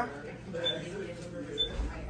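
Microwave oven keypad beeping as the cook time is keyed in: two short, high beeps about a second apart.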